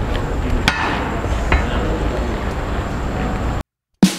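Outdoor street ambience with a steady low rumble and two sharp knocks, one under a second in and one about a second and a half in. It cuts off abruptly to silence shortly before the end.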